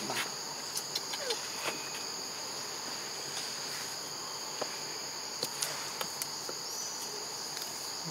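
Steady high-pitched drone of an insect chorus, with a few faint clicks scattered through it.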